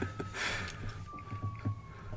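A distant siren wailing, heard as one long tone that slowly falls in pitch, with a short noisy breath about half a second in.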